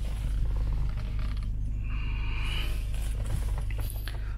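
Creaks and small clicks of handling and movement inside a car cabin, with a short squeak about two seconds in, over a steady low hum.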